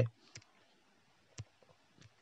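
A pause in speech: near silence, broken by two faint short clicks, one about a third of a second in and one about a second and a half in.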